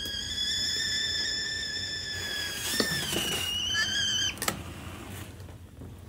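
Stovetop whistling kettle at the boil: a steady high whistle that wavers briefly near the middle and stops about four seconds in, followed by a sharp click.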